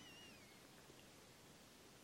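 Near silence: faint room tone, with the tail of a thin, high, drawn-out call that fades out with a falling pitch about half a second in.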